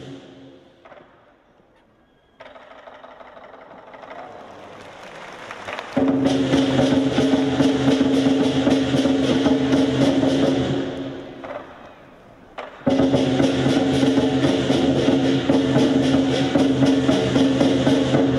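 Lion dance percussion band playing: drum, cymbals and gong in a fast, dense rhythm with a sustained ringing tone underneath. It starts faint, turns loud about six seconds in, drops away briefly around eleven seconds and comes back loud near thirteen seconds.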